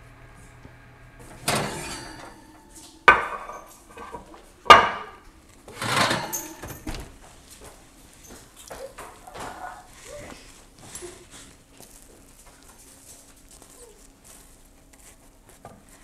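Kitchen utensils and cookware knocking while cooking: three sharp knocks in the first five seconds, a longer clatter about six seconds in, then lighter clinks and handling sounds.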